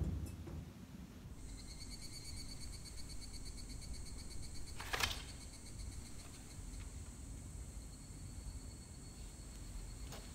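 Quiet room with a faint, steady, high-pitched pulsing trill. About halfway through comes one brief sharp swish as a light wooden performance sword (takemitsu) is swung through a cut.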